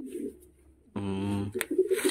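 Domestic pigeons cooing in a nest, low throaty coos at the start and again near the end, with a sharp click late on.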